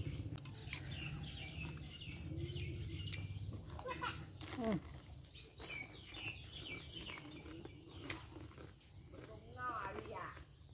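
Close-up mouth sounds of chewing lettuce-wrapped fried noodle balls: soft crunches and clicks scattered throughout. Birds chirp in the background.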